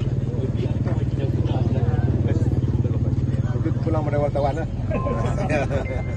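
A motor vehicle's engine running close by, a low rapid pulsing that swells toward the middle and fades out about four and a half seconds in, under the crowd's voices.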